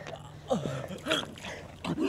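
A boy on his back with his mouth wide open making short, broken groans and sputters, about three in a row, each falling in pitch.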